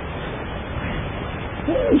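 Steady hiss of room noise in a pause between words, with no distinct event in it.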